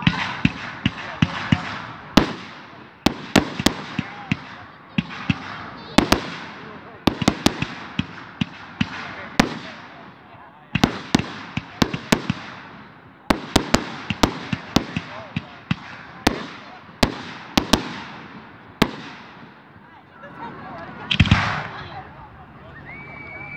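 Aerial fireworks going off in a rapid series of sharp bangs, many in quick clusters, each trailing off over about a second. A denser rush of crackle comes near the end.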